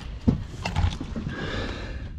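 Handling noise as a camera is moved against a boat: a few short knocks and a low thump, then a brief rubbing scrape near the end.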